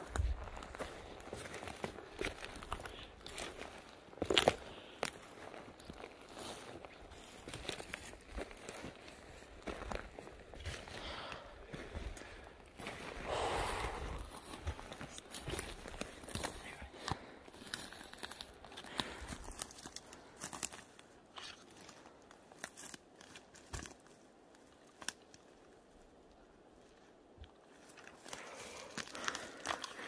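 Footsteps crunching through dry pine needles and twigs on a forest floor, with scattered small snaps and crackles. The steps thin out in the last third and it goes nearly quiet for several seconds.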